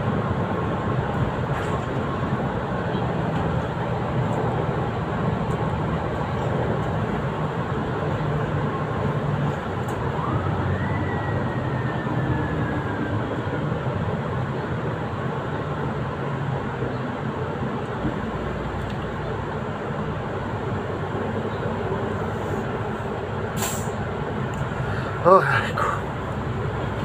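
Solaris Urbino 8.9 city bus on the move, heard from inside at the front of the cabin: a steady engine and road drone. About ten seconds in a thin whine rises and then slowly falls away, and a sharp click comes near the end.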